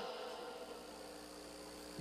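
Faint steady hum and hiss: room tone, with the end of a man's voice dying away at the very start.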